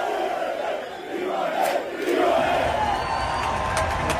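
A group of people shouting and cheering together, with a brief lull about a second in.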